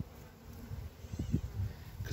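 Honey bees buzzing around an open hive and a frame crowded with bees, over a low rumble.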